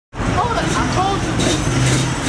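A sport ATV's engine running at idle, a steady low hum, with people talking over it.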